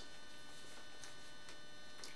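A low, steady electrical hum with thin high-pitched whine tones, the background noise of the recording, with two faint ticks about a second in.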